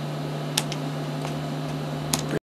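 Room tone: a steady low hum under an even hiss, with a few faint clicks about half a second in.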